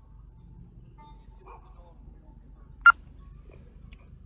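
A single short, sharp dog bark about three seconds in, from the police Belgian Malinois, over a low steady hum.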